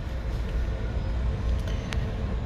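Steady low background rumble on a ship's bridge underway, with a single sharp click near the end.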